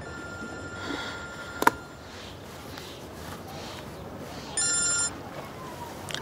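Mobile phone ringing with an electronic ringtone of steady high tones. The first ring lasts about a second and a half and is cut off by a sharp click. A second loud ring of about half a second follows near the end.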